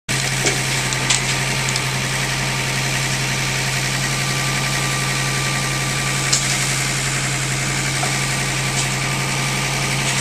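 Tractor diesel engine running at a steady speed, driving the hydraulic timber crane and log grab, with a steady low hum and a faint whine. A couple of brief sharp clanks come about a second in and past the middle.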